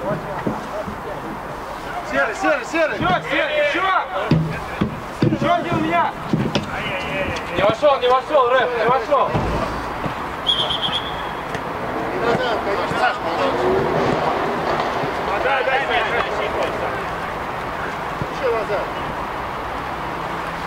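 Players' voices calling and shouting on the pitch, with one short, high referee's whistle blast about ten seconds in.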